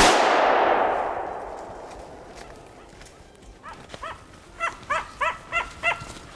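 A single gunshot at the very start, its echo rolling away through the forest over about two seconds. From about four seconds in, a Finnish spitz barks over and over in quick succession.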